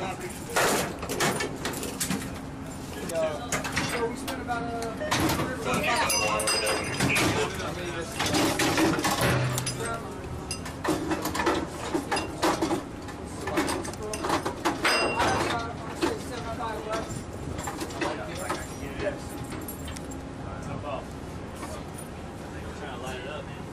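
Indistinct voices of several people talking, with scattered metallic clicks and clanks as an ammunition belt is handled at a deck-mounted heavy machine gun. A steady low hum runs under the first few seconds.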